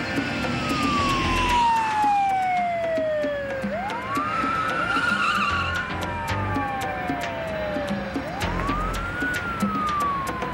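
Police car siren wailing: each cycle rises quickly in pitch, then slides slowly down over about four seconds, and two cycles overlap near the middle. Background music with a steady beat plays underneath.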